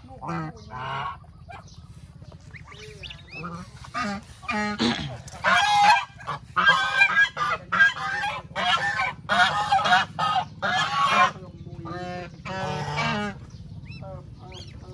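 Domestic geese honking: a run of loud, repeated honks from about five seconds in until about eleven seconds, with softer scattered calls before and after.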